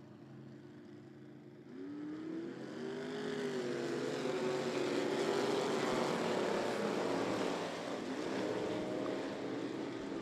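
A pack of dirt-track stock cars accelerating hard together, engine notes climbing in pitch from about two seconds in and at their loudest a few seconds later as the cars pass close by.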